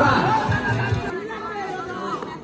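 A man talking for about the first second, then crowd chatter, with music playing underneath.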